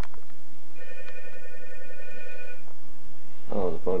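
A telephone ringing once: a steady electronic ring of several tones at once, starting about a second in and lasting nearly two seconds. A man's voice comes in near the end.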